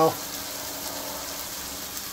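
Lamb, chopped garlic and ginger-garlic paste sizzling steadily in a frying pan over a gas flame, frying down to a caramelised base.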